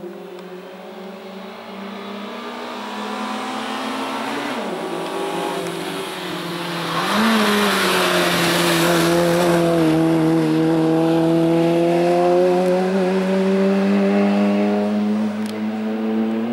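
Peugeot 106 Rally hill-climb car's engine under hard driving, growing louder as it approaches. The pitch drops briefly twice as it slows for the bends, with a rush of noise around the middle, then climbs steadily as the car accelerates up the road.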